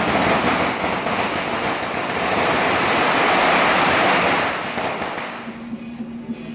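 A string of firecrackers crackling continuously, swelling to a peak and then fading away near the end.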